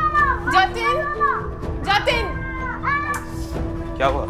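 A child's high-pitched wailing cries, several rising-and-falling wails one after another, over a steady held note of background music.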